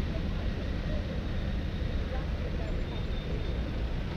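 City traffic ambience with a steady low rumble, mixed with indistinct voices of people close by.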